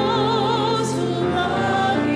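A woman singing the responsorial psalm solo with wide vibrato, over sustained chordal accompaniment.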